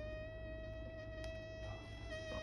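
Electric vertical egg cooker whistling as the egg cooks inside it: one steady, thin held tone that wavers slightly in pitch.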